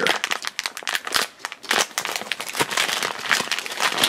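Pink plastic blind-bag wrapper crinkling as hands tear it open and pull a figure out, a dense run of crackles.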